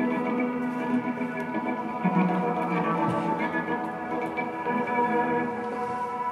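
Improvised electric guitar music played through effects pedals, long sustained notes layered and overlapping into a continuous texture.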